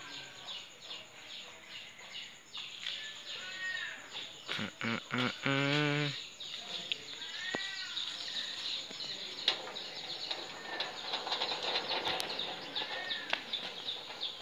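Small birds chirping repeatedly, short arched calls and quick twittering. A brief, low-pitched wavering call stands out about five and a half seconds in.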